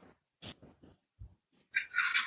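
Mostly quiet, with a few faint short breathy sounds and a louder breathy burst near the end: a person's breath and laugh sounds.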